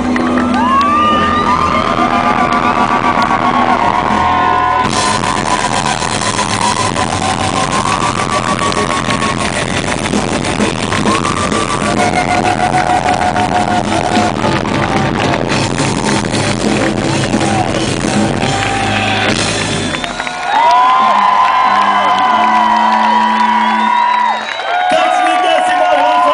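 Rock band playing live through a festival PA, heard from within the audience, with singing over it. About twenty seconds in the drums and bass drop out, leaving the voices and a held low note.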